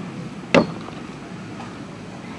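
A single sharp knock of a hard object about half a second in, over steady outdoor background noise.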